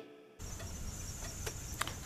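Electric-guitar music stops abruptly. After a brief silence comes faint, steady outdoor background noise with a low hum and a soft tick near the end.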